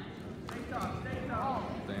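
People shouting encouragement at a wrestling bout, with a sharp knock about half a second in.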